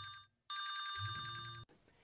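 Telephone ringing: the end of one ring, then after a short pause a second ring of about a second that cuts off suddenly as the call is answered.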